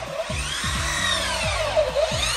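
Small electric hand drill mounted in a drill stand, its motor whine rising and then falling in pitch once as it speeds up and slows down. Background music with a steady bass beat plays underneath.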